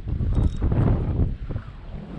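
Wind buffeting the camera microphone, a low rumble that eases off about a second and a half in.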